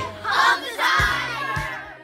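A group of children shouting and cheering together over a song with a steady beat. The sound fades out near the end.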